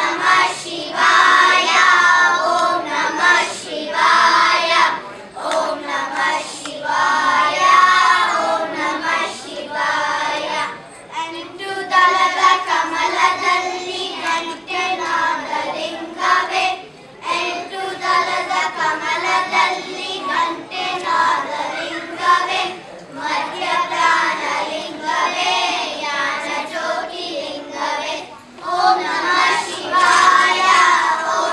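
A group of children singing together in unison, phrase after phrase, with brief pauses between the lines.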